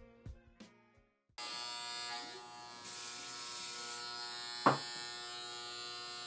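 A few guitar notes die away, then about a second and a half in electric hair clippers start up with a steady buzz. There is one sharp click a little past the middle.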